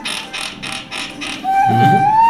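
A rapid rasping clatter, about five strokes a second, then about one and a half seconds in a toy pipe blown on one held, whistle-like note that rises slightly in pitch.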